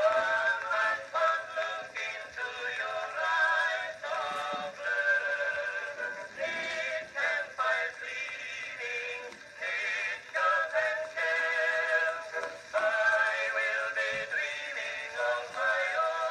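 Acoustic cylinder phonograph playing a Blue Amberol cylinder of a mixed chorus singing a medley of old popular songs. The voices sing with vibrato and sound thin, with no bass.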